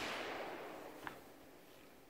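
A distant gunshot from elsewhere on the range, its echo fading away over about a second and a half, with a faint click about a second in.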